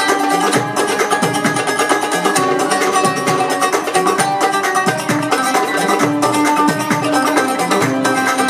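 An oud played with a plectrum in quick plucked runs, accompanied by a hand-struck darbuka keeping a steady rhythm: instrumental Arab-Andalusian music.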